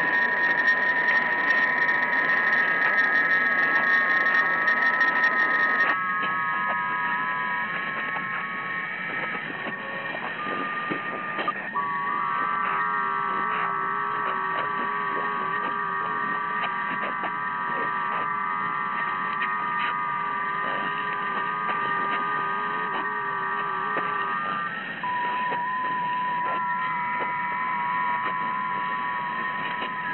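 Droning noise from an electric guitar fed through effects pedals into an amplifier: several steady, held tones over a hiss. The sound turns duller suddenly about six seconds in, and the set of held tones shifts a few times after that.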